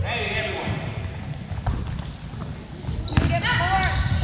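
A youth basketball game in a gym: a basketball bouncing on the hardwood floor amid voices calling out, with one call at the start and another near the end.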